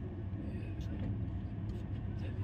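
Steady low rumble of a moving passenger train heard from inside the coach, with voices under it.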